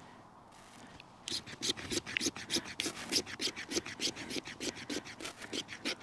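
Solognac Sika 100 stainless knife scraping down a stick of fatwood in quick, short, even strokes, about five a second, starting about a second in, shaving fine fatwood scrapings onto birch bark.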